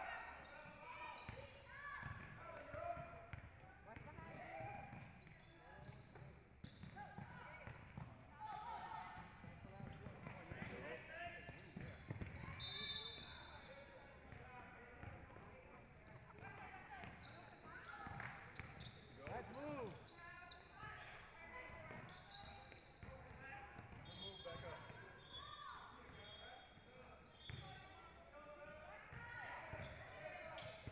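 Faint, echoing gym sound of a basketball game: a basketball bouncing on a hardwood floor and players' and spectators' voices scattered throughout.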